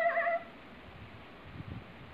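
A short, high cry that rises in pitch, then wavers, and breaks off about half a second in, followed by faint low sounds.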